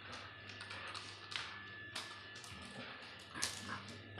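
A dog's claws tapping and scraping on hard stone steps as it moves about: irregular light clicks a few times a second, the loudest a little over three seconds in, over a faint steady hum.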